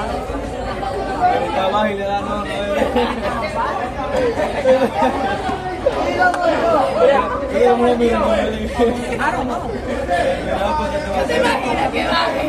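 Chatter of several people talking at once around a boxing ring, with no single voice standing out.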